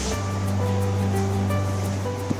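Background music: sustained chords over a held bass note, with a steady light beat.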